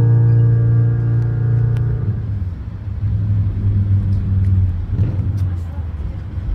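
Electric violin played through an amplifier with a low accompaniment underneath, holding a final sustained note that stops about two seconds in; after it, a low steady traffic rumble.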